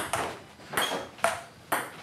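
A table tennis ball being hit back and forth in a rally. It makes sharp, hollow clicks off the bats and table, about two hits a second.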